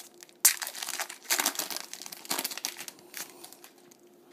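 Wrapper of a trading-card pack being torn open and crinkled by hand, in irregular crackles with the sharpest about half a second in.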